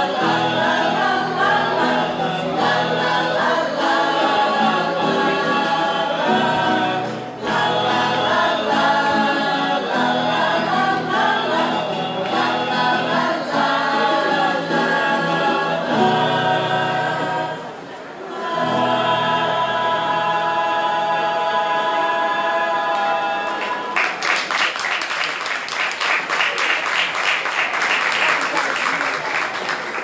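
A choir singing, ending on long held chords about 24 seconds in, followed by a few seconds of clapping.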